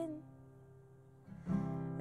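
Acoustic folk song between sung lines: a held female vocal note ends just after the start, the acoustic guitar rings faintly, then a strum comes in about one and a half seconds in.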